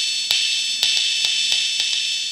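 Synthrotek DS-8 clone analog drum synth with its noise generator turned fully on and a longer decay, played from a drum pad: a hissing, hi-hat-like noise wash that rings on and is re-triggered about six times, each stick tap on the pad heard as a sharp click.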